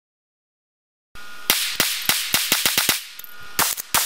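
Silence for about a second, then a rapid series of gunshots, several a second, with a short lull near the end.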